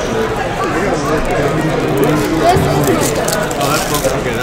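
Indistinct voices of people talking, steady throughout.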